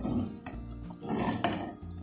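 Chicken broth being scooped with a ladle and poured, liquid splashing and dripping.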